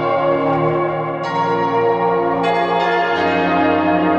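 Ringing bell tones that sustain and overlap, with new strikes joining about a second in, around two and a half seconds in, and again just after three seconds.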